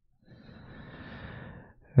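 A person sighing: one soft, breathy exhale lasting about a second and a half.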